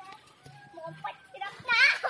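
High-pitched children's voices calling out, with a loud high call near the end.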